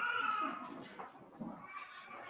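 A high-pitched, drawn-out human voice, its pitch arching gently, loudest in the first second, with a second weaker stretch of voice near the end.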